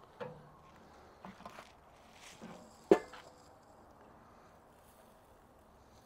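Faint handling sounds at a Weber charcoal kettle grill as it is opened, with one sharp metal clank and a brief ring about three seconds in.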